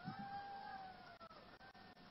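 A faint, drawn-out high-pitched cry, meow-like, that rises slightly and then falls away over about a second and a half, with a fainter trace of it near the end.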